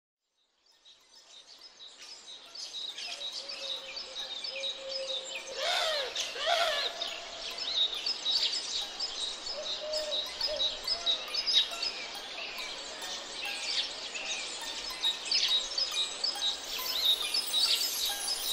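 A chorus of songbirds chirping and singing, fading in from silence over the first couple of seconds, with many quick high chirps and a few lower whistled calls that slide in pitch.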